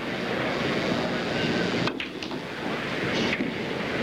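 Steady hiss and room noise of an old broadcast recording, with a sharp click or two about two seconds in from a pool cue striking the cue ball and the balls knocking together on the shot.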